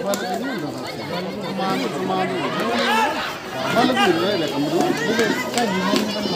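A kabaddi raider's continuous 'kabaddi, kabaddi' chant, held on one steady pitch, over players and spectators shouting.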